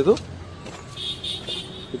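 A man's word trailing off, then faint outdoor background noise with a thin high-pitched hum starting about a second in.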